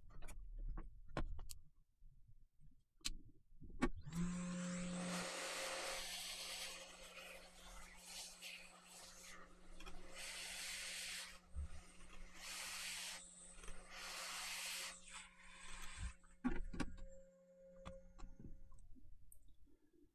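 Hot air rework station blowing: a steady air hiss over a low fan hum. It starts about four seconds in, swells and fades several times as the nozzle works over the board to desolder surface-mount ceramic capacitors, and shuts off near the end. There are a few light clicks and taps before and after it.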